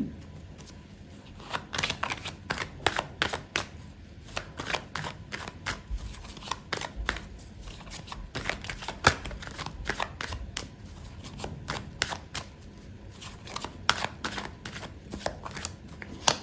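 A deck of oracle cards being shuffled by hand: a long, irregular run of light clicks and flicks of card against card.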